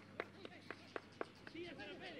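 A footballer running with the ball at his feet on a grass pitch: faint, regular thuds of footsteps and ball touches, about four a second, with faint voices near the end.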